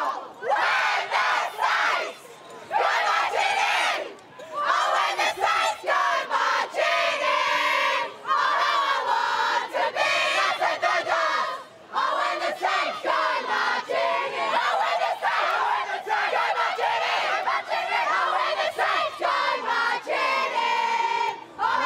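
A group of women footballers singing their team's club song together, loudly, as the winners' premiership celebration, with short breaks between lines.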